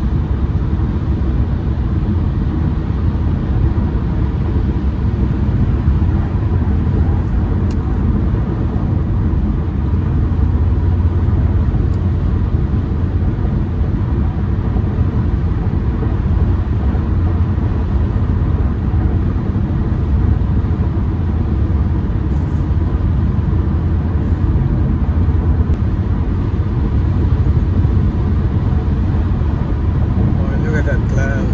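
Car driving at freeway speed, heard from inside the cabin: a steady, low road-and-tyre drone.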